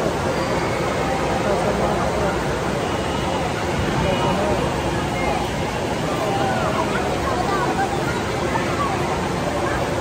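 Indoor water park din: a steady rush of pool water mixed with the babble of many swimmers' voices.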